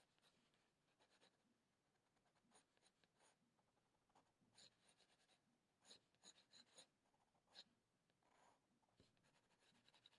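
Faint scratching of a colored pencil on textured watercolor paper: short, irregular shading strokes, sparse at first and more frequent from about halfway.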